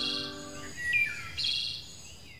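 Short outro jingle: a held musical chord that stops under a second in, with birds chirping over it and after it.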